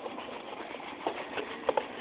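Paper fry cartons being handled and emptied, with faint scattered taps and rustles over low room noise.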